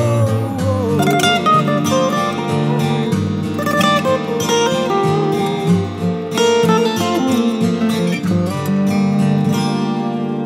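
Acoustic guitars playing an instrumental passage of a melodic rock ballad, chords with a melody line moving over them.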